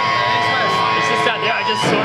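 Indistinct talking and chatter in a loud, crowded venue, over a steady held tone that cuts out shortly before the end.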